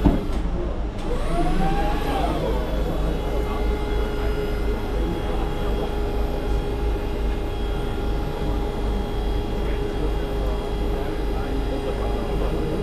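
A steady mechanical hum with a constant tone over a low rumble, with a short sharp click at the very start.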